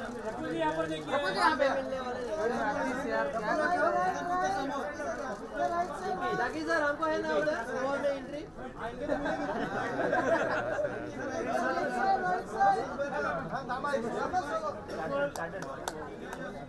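Several voices talking and calling out over one another, a steady chatter with no single speaker standing out.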